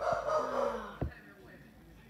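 A person's drawn-out cry or shout, about a second long and falling in pitch, followed by a single short knock.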